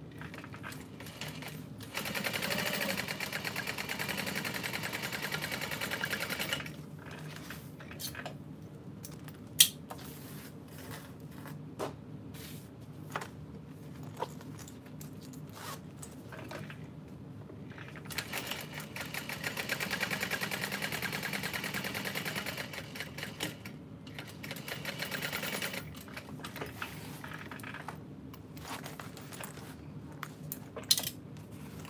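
Juki industrial sewing machine stitching in two runs of several seconds each, the first about two seconds in and the second from about the middle to near the end, with a brief pause inside the second. Between the runs there are light handling clicks and one sharp knock, the loudest sound.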